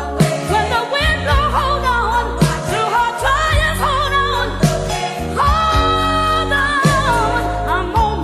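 Old-school gospel song: a singer's wavering, bending melody over sustained low bass notes and chords.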